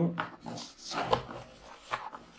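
Hands rummaging in a white cardboard box, with a series of short rustles and scrapes of cardboard and packaging.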